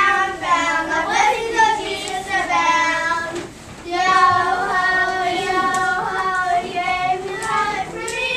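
Children singing a song, holding long notes, with a brief break about three and a half seconds in.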